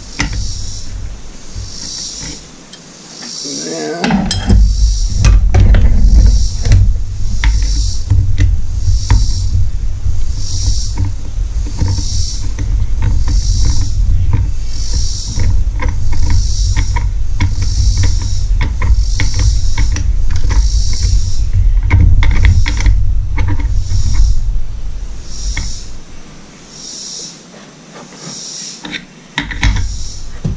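Hand tools working a flywheel puller on an outboard flywheel: a loud, deep rumble with many short metallic clicks from about four seconds in until near the end, as the puller bolt is turned against the wrench holding the puller.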